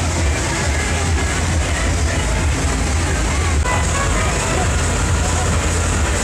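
A tractor's diesel engine running close by as it pulls a parade float, with music and crowd voices mixed in.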